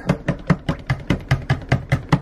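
Stick blender working in a bowl of soap oils and lye solution, with a rapid, even knocking about five times a second.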